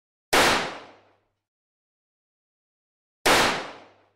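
Two loud sound-effect bangs, about three seconds apart. Each hits suddenly and dies away in under a second.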